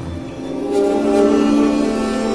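Ensemble of bowed sheet-metal string instruments, built as something between a cello and a viola, playing held notes together. The notes fade in about half a second in and swell into a sustained chord of several pitches.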